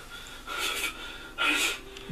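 Two short, breathy gasps from a person, about half a second and a second and a half in.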